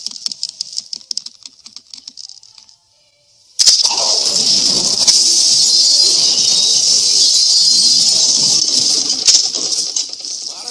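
Film sound track: light rustling of a fir Christmas tree's branches, then, after a moment's hush, a sudden loud crash about three and a half seconds in. It is followed by about six seconds of loud, noisy din with music under it.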